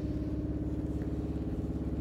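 Steady low mechanical hum of a running motor, holding one unchanging pitch.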